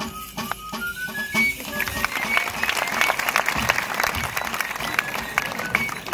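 Basque three-hole flute (txirula) playing a quick dance tune in short notes, with a drum beating time under it. A swell of crowd noise rises over the music from about two seconds in until near the end.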